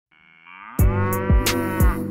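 A single long cow moo, rising in pitch at first, opens a hip hop track. A beat of kick drum and hi-hats comes in under it about a second in, with a kick about twice a second.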